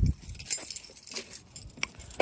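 Faint light clinking and rustling of carried belongings, with a sharp click near the end.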